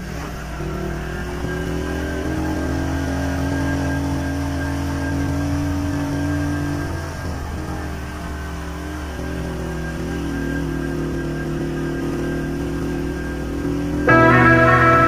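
Vehicle engine running at a steady speed, a constant low hum that dips slightly about halfway through.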